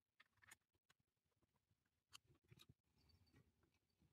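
Near silence, with a few very faint clicks.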